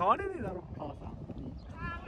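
Shouting on a football pitch: a loud, drawn-out call right at the start that slides up and then down in pitch, then a fainter call near the end, over low outdoor background noise.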